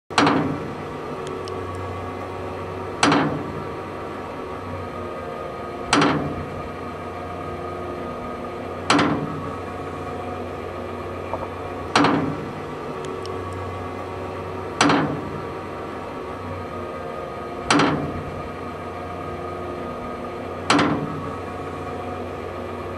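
Hüdig Iromat II TD hose-reel irrigator's drum drive: a sharp metallic clank with a short ringing tail about every three seconds, eight times, over a steady mechanical hum, as the reel is stepped round to wind in the hose.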